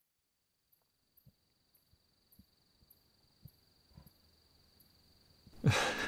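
Quiet night campfire ambience: a faint steady high insect trill, short high chirps repeating about every half second, and soft scattered crackles of a campfire. Near the end, a man's loud sigh.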